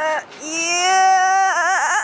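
A high voice holding one long wailing note that wavers up and down in pitch near the end.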